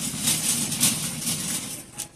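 Shopping cart rolling across a hard store floor: a steady rumble with a regular light rattle.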